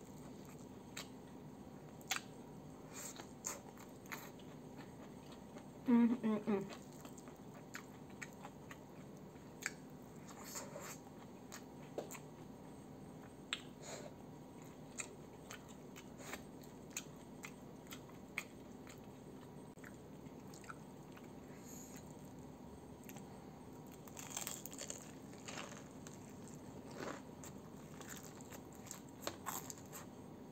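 Close-up chewing and crunching of crispy fried chicken and rice eaten by hand, with scattered crunches and wet mouth sounds throughout. A short hummed "mm" of enjoyment comes about six seconds in.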